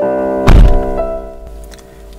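A car door shutting with a single heavy thunk about half a second in, over piano music with held notes that fade away.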